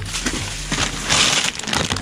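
Rummaging among cardboard boxes and plastic bags in a metal dumpster: a run of rustles, scrapes and knocks, louder about a second in.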